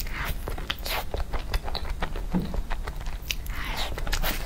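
Close-miked mouth sounds of a person biting into a piece of food and chewing it, with many small sharp clicks.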